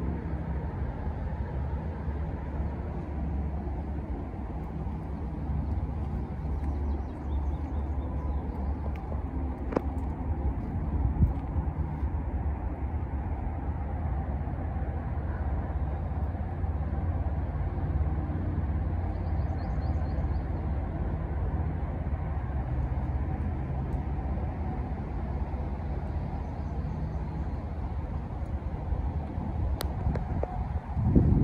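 Steady low drone of distant highway traffic, with faint bird chirps a couple of times.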